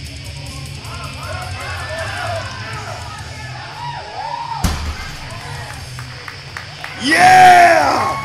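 Heavy metal music plays under shouts of encouragement while a 690-pound deadlift is pulled. About halfway through, a loaded barbell with iron plates thuds once onto the platform. Near the end comes a loud burst of yelling.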